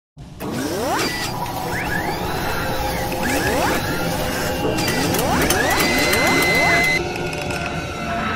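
Sound effects of an animated intro built around machinery: mechanical whirring and clicking with repeated rising sweeps in pitch, and a steady high tone that cuts off near the end.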